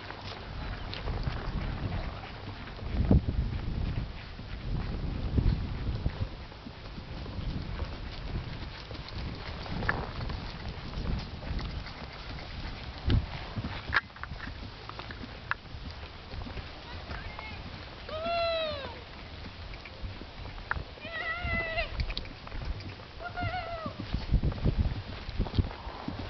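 Hoofbeats of a cantering horse on grass: irregular dull thuds with some sharper knocks. Near the end come a few short rising-and-falling pitched calls.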